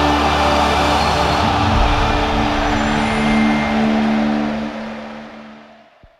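Station-ident music for the TV Pública logo: held low chord tones under a dense rushing swell, which fades out to silence near the end.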